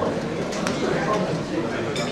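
Murmur of guests chatting in a hall, with a couple of light clicks about half a second apart.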